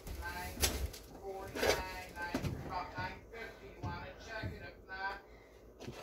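Faint, indistinct speech throughout, with a couple of short knocks in the first two seconds.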